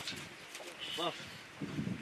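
Only voice: a drawn-out exclamation of "Allah" in encouragement, once at the start and again about a second in.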